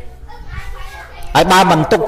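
Speech only: a short pause with faint background noise, then a man's voice resumes talking about a second and a half in.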